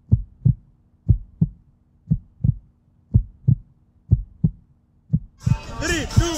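Heartbeat sound effect: paired low thumps, a lub-dub about once a second, over a faint steady hum. Music with singing cuts back in near the end.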